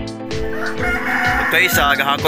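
A rooster crows about halfway through, over background music with a steady beat.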